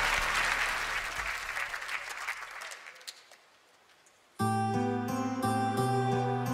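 Studio audience applause fading away, a moment of near silence, then a song's backing music starting suddenly about four seconds in with a steady, repeating pattern of notes.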